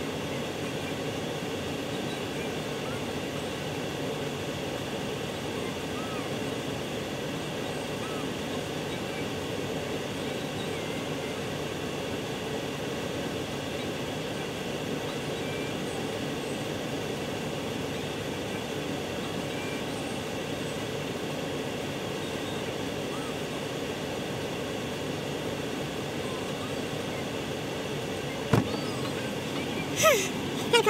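Steady running of an idling car heard from inside its cabin, with a few faint short chirps over it. A single sharp knock comes near the end.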